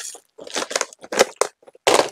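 Plastic film around bangles crinkling as the packs are handled, in several short bursts, the loudest near the end.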